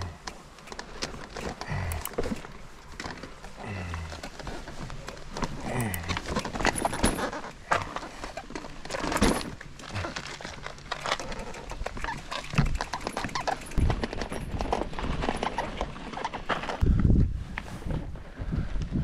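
Loaded touring bicycle rattling as it rolls over a rough path, with irregular clicks and knocks from the frame and bags.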